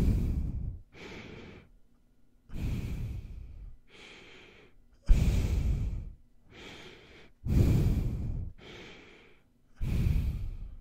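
Nose breathing right up against a microphone for ASMR: five heavy breaths that buffet the mic, alternating with four quieter, hissier ones, a full cycle about every two and a half seconds.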